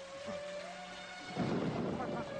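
Steady rain with held notes of background music, then a sudden crack of thunder about a second and a half in that lasts to the end.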